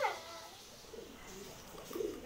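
Domestic pigeons cooing faintly, a soft low warble.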